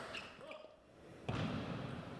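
A few light clicks of a table tennis ball on bat and table, a short lull, then voices break in suddenly just over a second in.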